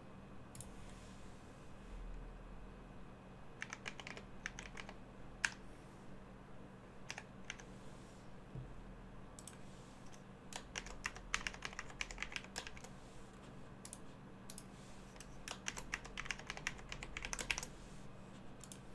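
Typing on a computer keyboard in several quick bursts of keystrokes, with a few single clicks in between.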